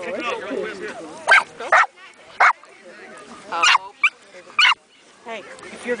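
A dog barking, about six sharp barks at uneven intervals, starting about a second in.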